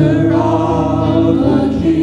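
Church worship band playing: electric guitar and sustained chords under a group of voices singing.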